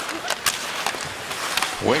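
Ice hockey game arena sound: a steady crowd noise with skates hissing on the ice, and a few sharp clicks in the first half second.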